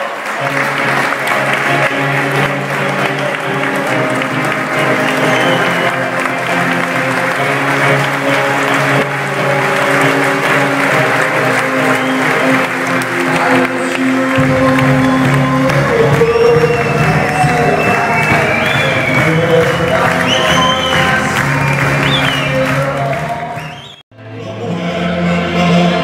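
Guests applauding over music. A deeper bass line joins the music a little past halfway.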